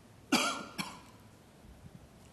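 A person coughing twice close to a microphone, two short sharp coughs about half a second apart.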